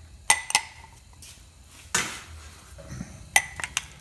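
Sharp clinks of a basting brush knocking against a ceramic mug of barbecue sauce as it is dipped and worked: two near the start, a longer scrape-like one about two seconds in, and a quick cluster of three soon after.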